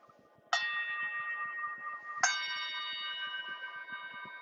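A meditation bell struck twice, about half a second in and again about two seconds in; each strike rings on with several high, steady tones that slowly fade.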